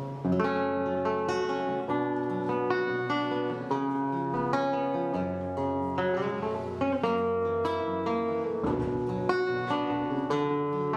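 Nylon-string classical guitar with a capo, fingerpicked: an instrumental passage of plucked notes and chords with no voice.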